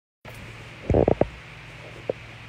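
Handling noise on a handheld phone's microphone: three short low thuds close together about a second in, over a steady low hum.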